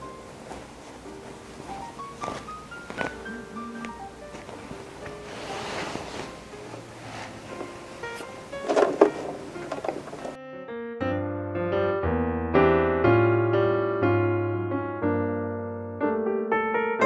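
Background piano music. For about the first ten seconds it plays faintly over room noise with scattered knocks and rustles, the loudest a rustle about nine seconds in. Then the room noise cuts off abruptly and the piano carries on alone and louder.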